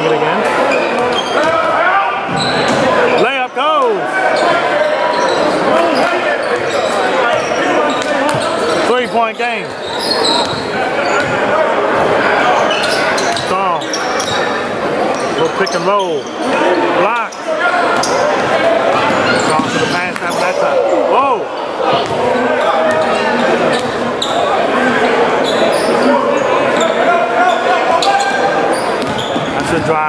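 Basketball dribbling on a hardwood gym floor, with sneakers squeaking now and then and the steady chatter of spectators echoing around the hall.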